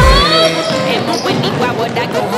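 A music track with a heavy bass beat cuts off just after the start, giving way to live gym sound: a basketball bouncing on the hardwood court and voices of players and spectators echoing in the hall.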